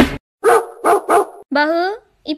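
A dog barking three short times, then a longer bark that rises in pitch.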